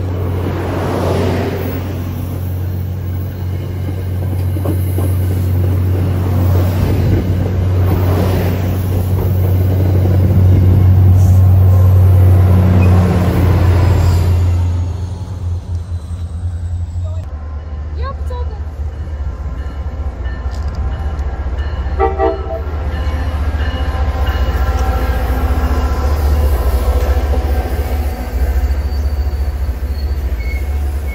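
MBTA commuter rail train pulling out past the platform, its diesel locomotive running with a steady low drone, loudest around ten to fourteen seconds in. The drone drops away about fifteen seconds in, and a second train's lower engine drone follows.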